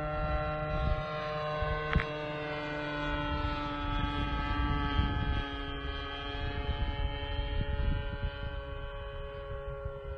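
The O.S. Max .50 glow engine of a radio-controlled Extra 300S model plane, swinging a 12x6 propeller, drones steadily in flight, its pitch drifting slightly lower and then higher again. A single sharp click comes about two seconds in.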